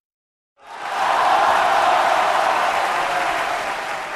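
Applause-like crowd noise that swells in about half a second in, after a brief silence, and then slowly fades.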